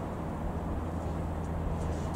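Cessna 172M Skyhawk's four-cylinder Lycoming piston engine and propeller droning steadily as the light aircraft flies past, heard from the ground.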